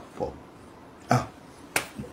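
A man says two short syllables, then a single sharp click comes about a second and a half in.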